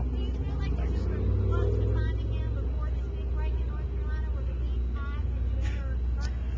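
A steady low hum with faint, distant speech over it.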